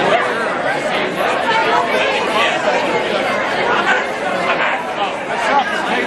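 Crowd chatter: many people talking at once in a large, crowded room, a steady babble of overlapping conversation.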